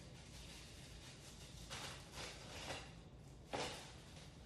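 Faint rustling and handling of gloves being pulled on, a few soft brushes with a sharper click near the end.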